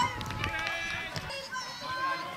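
Children's voices shouting and calling out during football play, high-pitched and mostly in the first second.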